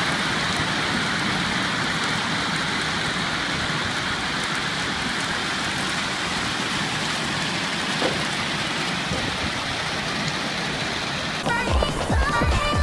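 Masses of black plastic shade balls pouring from a pipe and tumbling down a reservoir's lined bank into the water: a steady, even rush of sound. Electronic music with a heavy beat cuts in near the end.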